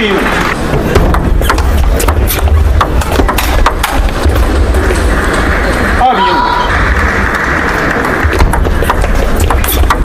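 Table tennis rally: the plastic ball clicking off the rackets and table in quick, irregular strokes, over the steady background noise and voices of the hall.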